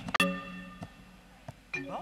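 A metal bell struck once, a sharp strike followed by a clear ring that fades over about half a second.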